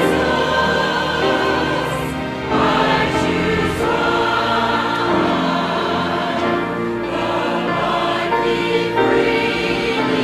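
A mixed church choir of men's and women's voices singing a hymn in chords, with notes held for a second or more before moving on.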